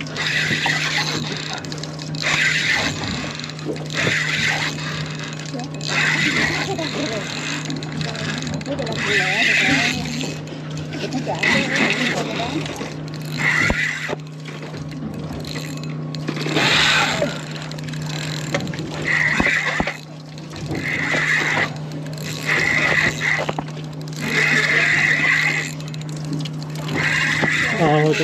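Spinning fishing reel being cranked, a whirring that comes in repeated strokes roughly every second or so, over a steady low hum.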